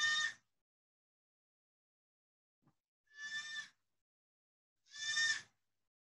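Short animal bleats: two separate calls about three and five seconds in, each about half a second long and fairly high-pitched, with a similar call just ending at the start.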